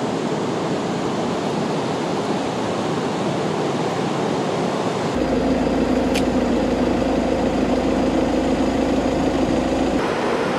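Steady rushing noise; about five seconds in, a steady low hum like an idling engine joins it and holds.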